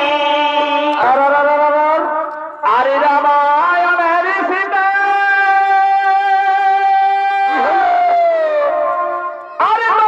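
A shehnai (sanai), a double-reed pipe, playing a Chhau dance melody through loudspeakers, with sliding, ornamented notes and a long held tone in the middle. The line breaks off briefly about two and a half seconds in and again just before the end.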